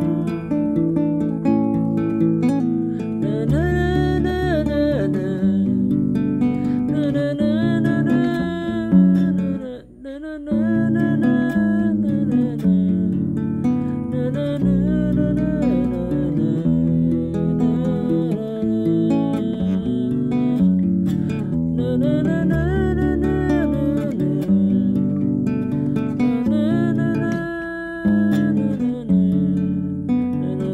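A song played on acoustic guitar, with a woman singing and a violin playing along. The music breaks off briefly about ten seconds in.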